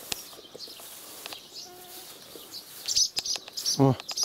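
Barn swallows giving a quick series of sharp, high alarm chirps starting about three seconds in, agitated by a person coming close to their nest.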